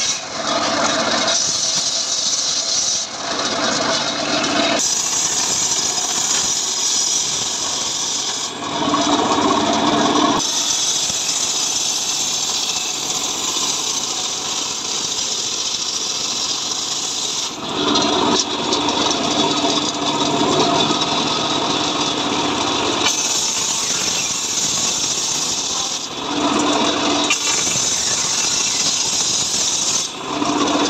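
Large circular saw bench ripping mahogany planks, the blade running continuously. Its sound changes to a lower-pitched ringing tone in several stretches, typical of the blade biting into the wood.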